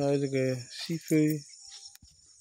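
A steady, high-pitched insect chorus runs throughout, under a voice speaking in two short bursts in the first half.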